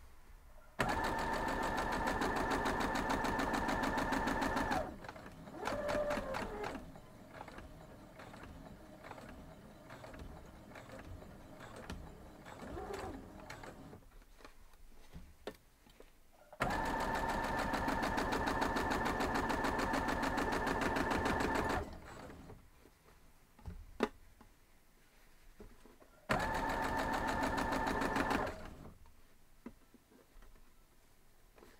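Electric sewing machine stitching a seam at a steady, even speed in three runs: about four seconds near the start, about five seconds past the middle, and two seconds near the end. In the pauses between runs there are quieter sounds and one sharp click.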